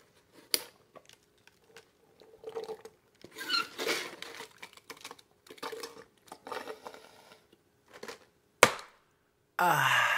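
A person drinking in gulps from a large paper soda cup with the lid off. A single sharp knock comes a little over a second before the end, followed by a loud sigh.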